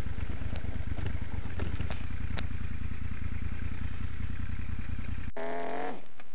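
Moto Guzzi Stelvio NTX's 1151 cc transverse V-twin running at low revs, with a few sharp clicks; the engine is switched off and cuts out suddenly about five seconds in.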